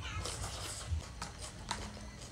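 Close-miked mouth sounds of eating noodles in broth: a short slurp at the start, then wet chewing with several sharp lip smacks and clicks.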